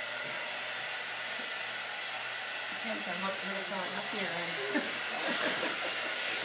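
An electric blower, a fan or hair-dryer type motor with its airflow, running steadily as a constant hiss. Faint voices talk in the background from about halfway.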